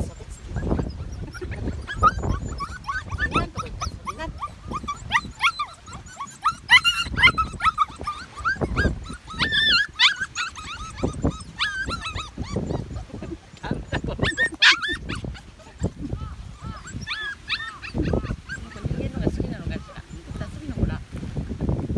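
Medium poodle puppies whining and yipping: a continual stream of short, high-pitched rising and falling cries, with the loudest yelp about fifteen seconds in.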